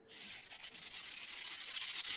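Faint, steady rubbing hiss picked up by a player's microphone on an online voice call, lasting about two seconds.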